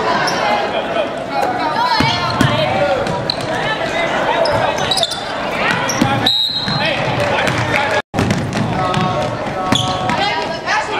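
A basketball being dribbled on a hardwood gym floor, with shouting voices of players and spectators echoing in the gym. The sound cuts out for an instant about eight seconds in.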